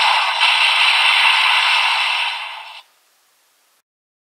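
Electronic sound effect from a DX Kamen Rider Revice toy belt with the Perfect Wing Vistamp, played through its small speaker: a steady, thin-sounding noisy rush with no bass that fades out and stops just under three seconds in, ending the toy's sound sequence.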